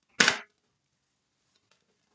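A tarot deck being shuffled by hand: one short, crisp rustle of cards slapping together, about a quarter second long, just after the start, then only faint ticks.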